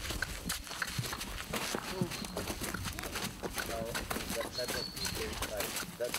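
A horse's hoofsteps on gravel as it is led at a walk: a string of irregular clops and scuffs, with faint voices underneath.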